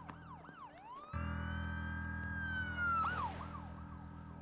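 Police siren sweeping quickly up and down. About a second in it rises into a long wail, which falls away near the three-second mark before the quick sweeps return. It sounds over a low, steady droning score.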